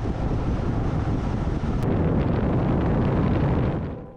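Wind buffeting the microphone over the rumble of a car driving along a road: a loud, steady rush with no engine note standing out, cutting in and out suddenly.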